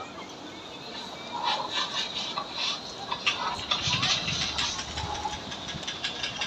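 Busy outdoor promenade ambience: indistinct voices of passers-by and scattered short taps and clicks. A low engine rumble rises about four seconds in and fades near the end.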